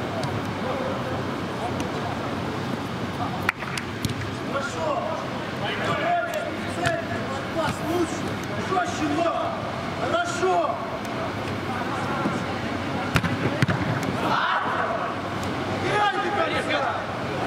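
Echoing shouts of footballers on an indoor pitch, with a few sharp thuds of the ball being kicked, two early on and more near the end, over a steady background rush.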